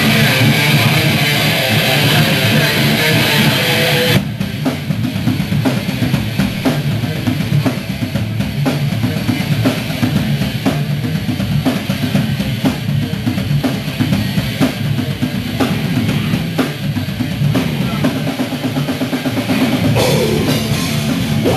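Live heavy rock band playing an instrumental intro. A distorted electric guitar chord rings for about the first four seconds, then cuts off as the full band comes in with a steady, driving drum-kit beat of bass drum and snare under chugging electric guitars and bass guitar.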